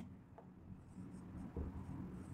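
Faint scratching of a marker pen writing on a whiteboard, in short, intermittent strokes.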